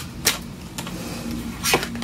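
Tarot cards handled as a single card is drawn from the deck: a faint click a quarter-second in and a sharper card snap near the end.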